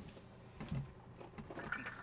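Faint handling noise: soft rustling and a few light knocks as a cardboard product box is reached for and picked up from a desk, busier near the end.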